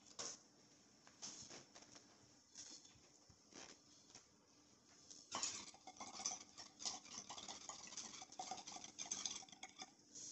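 Faint water bubbling and crackling in a glass beaker bong as it is smoked, a dense run of small pops lasting about four seconds from about five seconds in, after a few scattered clicks of handling.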